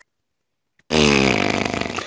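A fart: a low buzzing rasp about a second long that starts about a second in and breaks into a rattle at the end.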